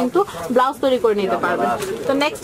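Speech: voices talking in the shop, with no other sound standing out.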